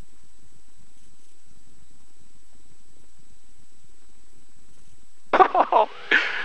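Steady, low, muffled drone of a Cessna 172S's four-cylinder engine at climb power just after takeoff. A man's voice breaks in about five seconds in.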